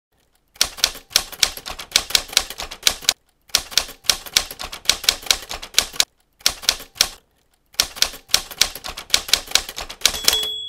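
Typewriter keys clacking in quick runs of about five strokes a second as on-screen text is typed out, broken by three short pauses.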